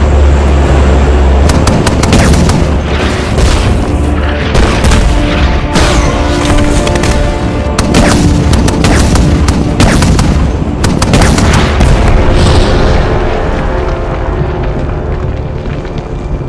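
Film battle sound: an AC-130 gunship's 105 mm cannon firing again and again, its shells exploding on the ground in quick succession, over a deep continuous rumble and a loud dramatic music score. The blasts thin out near the end.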